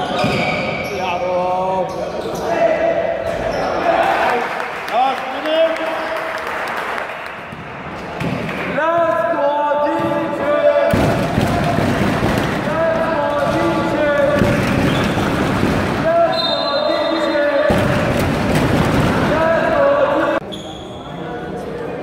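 Basketball game in a gymnasium: the ball bouncing on the court amid shouting from players and spectators, with a louder stretch of noise and voices in the second half.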